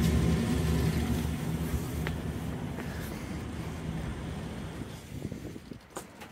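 Wind rumbling on the microphone, loudest at first and dying away over several seconds, with a light click about two seconds in and another near the end.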